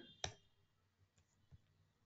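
Computer mouse clicking: one distinct click about a quarter second in, then a couple of faint clicks, otherwise near silence.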